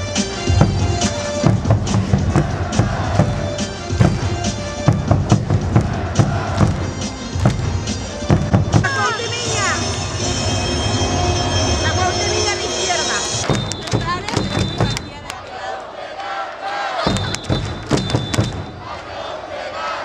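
Stadium cheer music over the ballpark speakers with a crowd of fans chanting and shouting along, led from a stage by the team's cheer leader. The low beat drops out about two-thirds of the way through, leaving voices and sharp claps.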